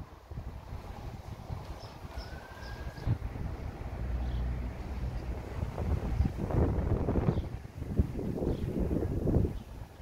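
Outdoor street ambience: wind buffeting the microphone over a steady low rumble, with louder gusts in the second half.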